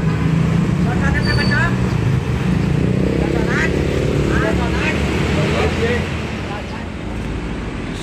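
Mercedes-Benz intercity coach engine running as the bus turns through a junction. The engine note climbs as it accelerates away from about three seconds in, then fades near the end.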